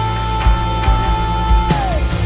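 Live worship band music with drums, keys and electric guitar. One long high note is held and slides down near the end, while the kick drum beats underneath.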